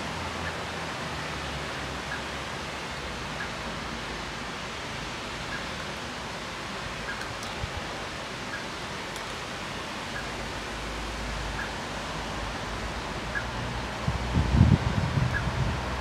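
Steady outdoor background hiss picked up by a camera's built-in microphone, with a faint short high peep every second or two. Near the end comes a burst of low rumbling, the loudest part, like wind buffeting or handling on the microphone.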